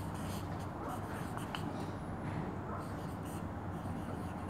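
Marker pen writing on a whiteboard: faint, short scratching strokes over a steady background hum.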